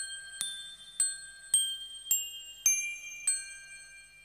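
Cartoon title-card music: a slow melody of single bell-like chime notes, about two a second, each struck sharply and ringing out. The last note, a little after three seconds in, fades away.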